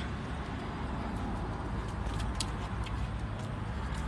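Steady outdoor background rumble and hiss with no voice, with a few faint short clicks about two seconds in.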